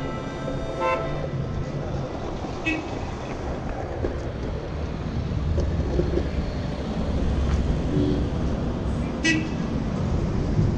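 Surfskate wheels rolling over asphalt with a steady low rumble, among street traffic, with short car-horn toots about a second in, near three seconds and again near the end.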